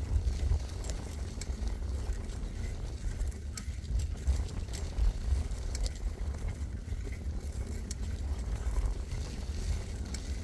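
Bicycle riding over a sandy dirt trail: a steady low rumble of wind on the microphone and tyres rolling, with scattered sharp clicks and rattles from the bike and trail.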